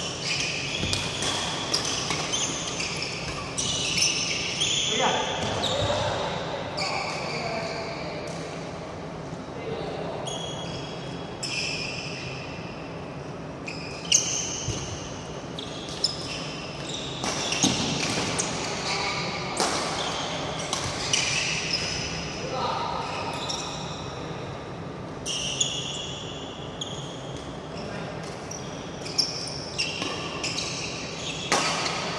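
Badminton rallies: irregular sharp cracks of rackets hitting the shuttlecock, the loudest about 14 and 18 seconds in, mixed with high squeaks of court shoes on the floor, echoing in a large hall.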